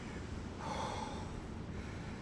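A man's single heavy, breathy exhale about half a second in, catching his breath during a rest between exercise rounds.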